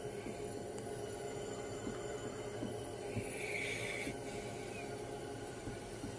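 Quiet background with a steady low hum, and a faint higher-pitched sound lasting about a second midway.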